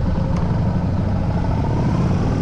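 Yamaha Bolt custom's air-cooled V-twin running steadily while being ridden, through a home-made exhaust built from an XJR silencer wrapped in heat tape.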